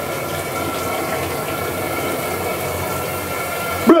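Shower water running steadily behind a shower curtain: a constant rush of spray with a faint steady whine in it. A man's loud shout cuts in right at the end.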